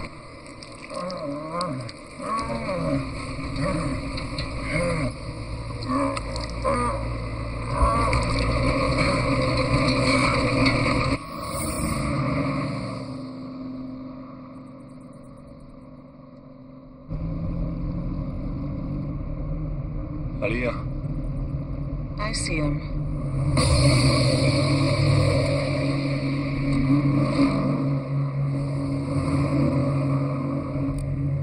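Film soundtrack mix: music with a voice over it for the first part, fading down a little before halfway. It then cuts to steady vehicle engine noise under the music for the rest.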